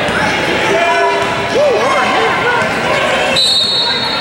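Basketball game noise in a large echoing gym: a ball bouncing on the court and sneakers squeaking in a quick run of short rising and falling squeals about halfway through. A steady high tone starts near the end.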